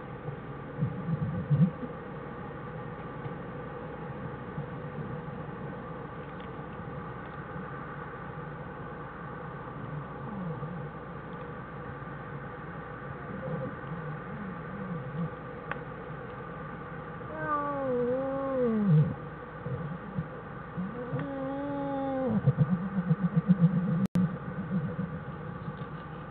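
A newborn black bear cub in the den crying twice, each a wavering squall of a second or so that falls in pitch, the second coming a few seconds after the first and running into a spell of scuffling in the bedding.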